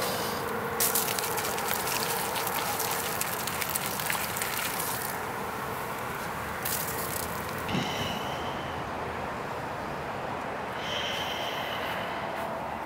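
Coca-Cola poured out of an upturned plastic bottle onto dry leaves and the ground: a steady splashing, fizzing hiss that stops after about seven seconds once the bottle is empty.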